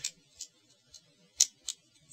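A few small, sharp clicks of hard plastic parts being handled as a clear plastic beam-shield effect part is pressed onto a model kit's shield emitter. The loudest click comes about one and a half seconds in.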